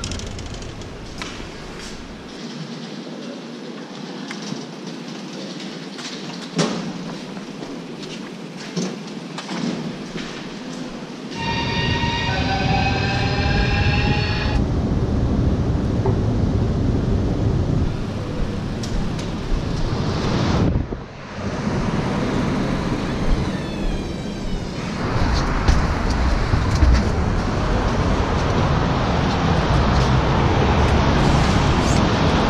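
Ambient noise of a railway station and its footbridge, with scattered clicks. About twelve seconds in comes a short run of stepped electronic chime tones, and from then on the noise is louder and rumbling.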